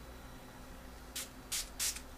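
Small pump spray bottle of skin-application solution spritzed three times in quick succession, starting about a second in, the sprays about a third of a second apart.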